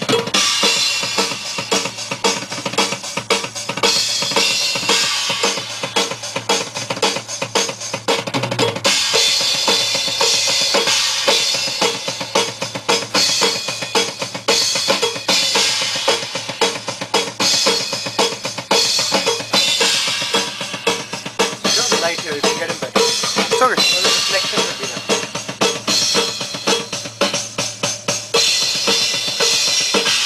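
Acoustic drum kit played continuously, with kick drum, snare and cymbals in a steady rhythm as a drum track is recorded.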